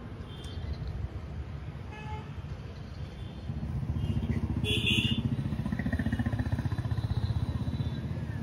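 A motor vehicle engine running close by, its low pulsing getting louder from about halfway through. A short, high toot sounds just before the middle.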